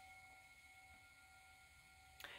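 Near silence, with a faint, steady ringing tone held underneath: soft meditation background music.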